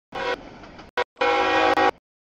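CSX freight locomotive's multi-chime air horn sounding for the grade crossing in separate blasts: a short one at the start, a brief toot about a second in, then a longer blast.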